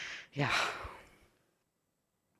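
A woman's sighing, breathy exhale into a microphone, ending in a spoken "yeah" that falls in pitch. The sound cuts off to dead silence about a second and a half in.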